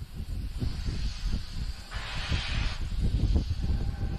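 Launch-pad audio from a fuelled Falcon 9: a low, uneven rumble throughout, with a swell of hissing gas venting from the rocket about two seconds in.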